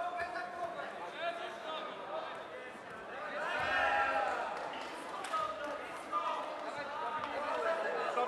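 Overlapping shouts and calls from several people in a large sports hall, loudest about three and a half to four and a half seconds in.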